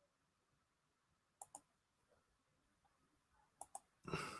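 Near silence with two faint double clicks, one about a second and a half in and one near the end, each pair a fraction of a second apart.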